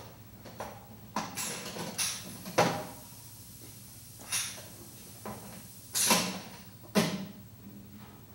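A pneumatic striker mechanism knocking against a ceramic shell at random intervals: about ten sharp knocks and clunks, unevenly spaced, the loudest near the middle and about three quarters of the way through.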